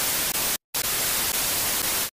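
Television static: a steady, even white-noise hiss, broken by a brief silent gap just over half a second in.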